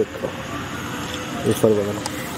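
A man's voice speaks a short word at the start and again near the end, over a steady hum of distant city traffic.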